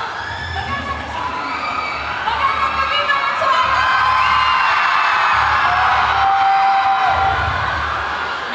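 A large crowd of fans screaming and cheering, full of high-pitched shrieks, swelling louder after about two seconds and easing off slightly near the end.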